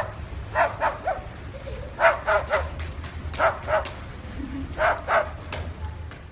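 White cockatoo mimicking a dog's bark: short barks in groups of two or three, about nine in all.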